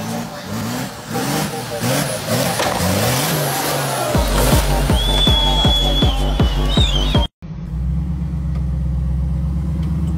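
A Jeep Cherokee XJ's engine revving hard as it drives through mud, mixed with music that has a heavy regular beat. After a sudden cut about seven seconds in, a Jeep engine runs steadily at low revs as it crawls over rocks.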